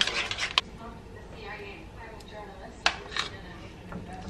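A metal spoon clinking and scraping against a ceramic bowl a few times as a thick marinade is scooped out and spread onto raw chicken. The sharpest tap comes about three seconds in.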